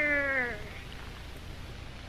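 A person's long drawn-out "ohhh", sliding slightly down in pitch and ending about half a second in. Then only a low background hiss.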